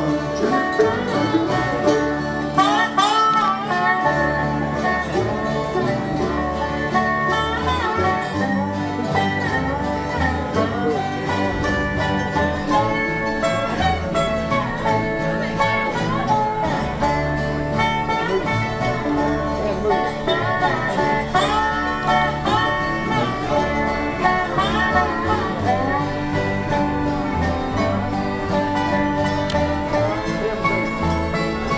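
Live acoustic bluegrass band playing an instrumental break: strummed acoustic guitar, picked banjo and a lead line of sliding notes over a steady bass.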